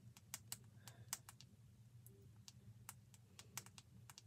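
Faint computer keyboard typing: irregular key clicks at an uneven pace, over a low steady hum.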